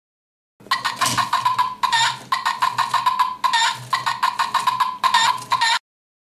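Egg-shaped baby-chick alarm clock going off: a really loud electronic chick call of rapid repeated pulses in several bursts with short breaks. It starts about half a second in and cuts off suddenly near the end.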